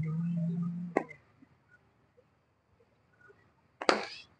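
A steady low tone with overtones holds for about a second and ends at a single sharp knock. Near the end comes the sharp crack of a cricket bat striking the ball.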